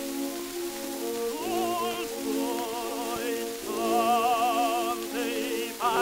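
Acoustic-era shellac 78 rpm disc recording of an operatic tenor with orchestra: held chords from the accompaniment, then the tenor comes in about one and a half seconds in, singing sustained notes with a wide vibrato. The sound is thin, with no bass, over a steady hiss of disc surface noise.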